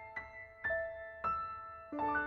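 Slow, soft piano music: single notes struck about twice a second, each ringing out and fading, with a fuller chord near the end.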